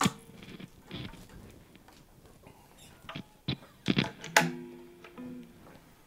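Electric guitars being handled and passed between two players: a sharp click at the start, then scattered knocks from the guitar bodies. About four seconds in, a string rings faintly through the amp.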